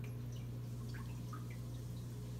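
Aquarium water dripping: scattered small, separate drips over a steady low hum from the running tank equipment.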